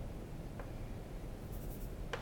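Chalk on a blackboard: a faint tick as it touches the board, then a short high scratch of a chalk stroke near the end.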